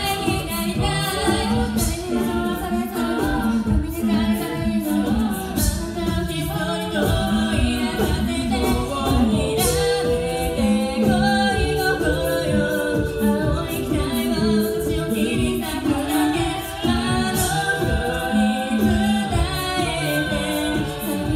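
Female a cappella group of six singing in close harmony into handheld microphones, several sustained vocal parts moving together over a steady rhythmic low pulse.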